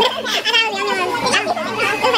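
Several young people's voices chattering over one another, with no clear words.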